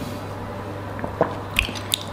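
A steady low room hum with a few soft clicks and smacks in the second half, the small sounds of tasting a drink and handling a glass.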